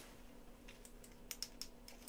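Small glass dropper bottle being opened, the dropper cap unscrewed and drawn out: a quick run of faint clicks and ticks from the cap and glass in the second half.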